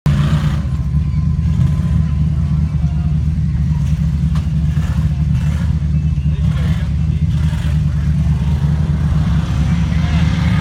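Off-road buggy's engine running under load as it drives up a dirt hill: a loud, steady, low drone.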